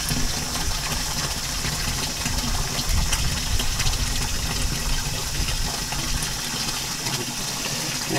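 Water running steadily from a washdown hose onto a fish-cleaning table, with a low rumble underneath that weakens near the end.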